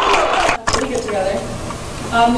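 Audience applause and cheering in a large room, cut off abruptly about half a second in, followed by voices.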